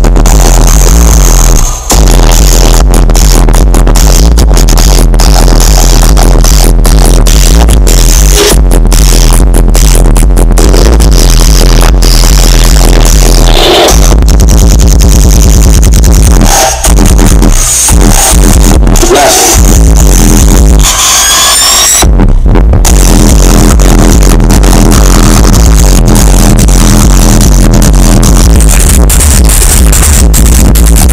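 Very loud electronic music with heavy bass played through a car audio system of eight Pioneer subwoofers rated 1000 W RMS. The bass drops out briefly a few times, and a rising sweep about two-thirds of the way through leads back into it.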